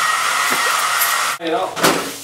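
Handheld hair dryer blowing: a steady rush of air with a high whine, cutting off suddenly about one and a half seconds in.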